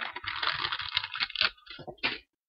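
A quick run of clicking and rustling that thins out to a few separate clicks near the end.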